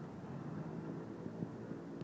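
Steady rush of water pouring through the open sluices of a canal lock gate as the lock chamber fills.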